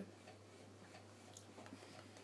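Near silence: room tone with a steady low hum and a few faint small clicks.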